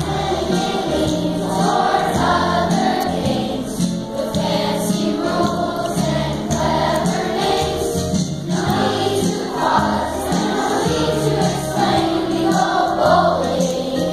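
Children's choir singing a song in unison with instrumental accompaniment, continuous and steady in level.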